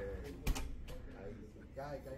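Indoor room tone of a large showroom with faint voices, a single sharp click about half a second in, and a man's voice starting just before the end.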